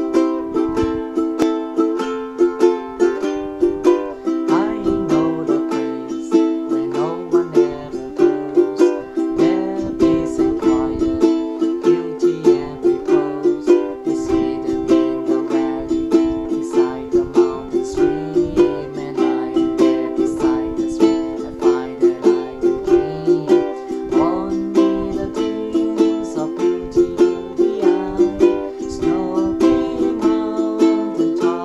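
Ukulele strummed in a steady rhythm, cycling through the chords C, Am, F and G7.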